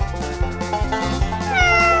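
A domestic cat meowing once, starting about one and a half seconds in: a drawn-out call that falls in pitch. It sits over background music with a steady beat.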